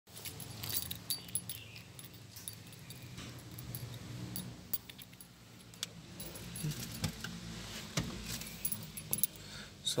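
Light metallic jingling and scattered clicks throughout, over a low steady hum.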